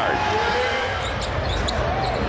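Basketball arena sound: a ball being dribbled on the hardwood court with repeated low thuds, under steady crowd noise.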